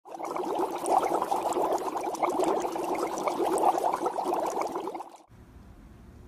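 Water trickling and bubbling, like liquid being poured, steady for about five seconds and then stopping.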